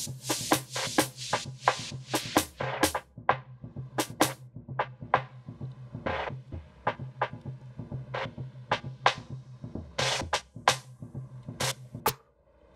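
Electronic beat with drum and percussion hits over a low bass line, played back in a production session. In the middle the highs are cut away and the beat turns dull, then they open up again near the end: an EQ filter swept on a track to dull it for a new section.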